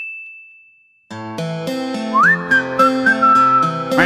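A bright, bell-like ding rings and fades away over the first second. Then a music track with a steady beat starts, and about a second later a whistled melody slides up and carries a tune over it.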